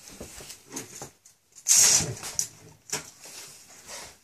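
Faint clicks and rustles of a steel tape measure being handled and run along a wall, broken about two seconds in by a short, sharp noisy burst that fades within half a second.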